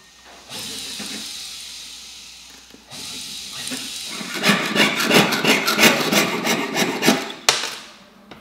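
Jeweller's hand tools working a thin 18K gold sheet on a wooden bench pin: a steady scraping for about the first half, then rapid rasping strokes about five a second, like a piercing saw or file cutting the metal, ending in a sharp click near the end.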